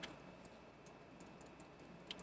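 Near silence: room tone with a few faint, scattered light clicks.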